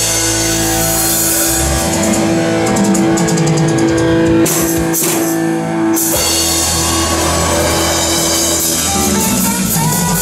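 Live rock band playing an instrumental passage on electric guitars, electric bass and drum kit, with cymbals throughout. A long note is held through roughly the first half.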